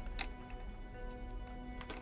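Soft background music of sustained, steady tones, with two light clicks, one just after the start and one near the end.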